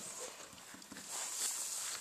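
Faint irregular rustling and soft taps over a steady hiss: handling noise as the recording phone is picked up and moved.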